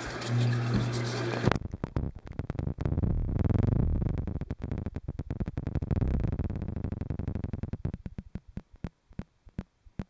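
A camera microphone going under aquarium water. For about a second and a half there is a hiss with a steady hum, then the sound suddenly turns dull and muffled: a low rumble with irregular clicks and crackles from air bubbling out of the submerged microphone hole. The rumble fades and the clicks grow sparse near the end.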